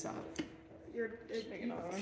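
Speech: a woman finishing a question, then faint voices in the room. No other sound stands out.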